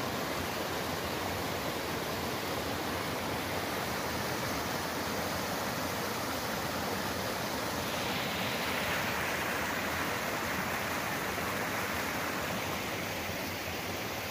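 Shallow mountain stream rushing over rocks, a steady water noise that turns a little brighter and hissier about eight seconds in.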